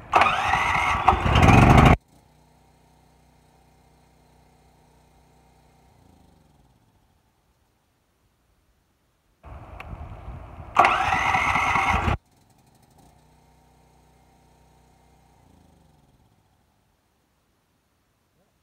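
A 340cc portable generator engine started on its electric starter, with a wired-in solenoid pulling the choke: it fires and runs loud for about two seconds, then cuts off suddenly and spins down with falling pitch. About ten seconds in it is started again, runs loud for about a second and a half, and is shut off again. The engine starts without the choke being moved by hand, so the solenoid choke works.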